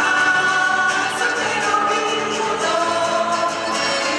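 Chilean cueca music with several voices singing together over a steady beat.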